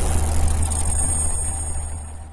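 Deep cinematic rumble from a channel-intro sound effect, fading out near the end, with thin high tones ringing over it.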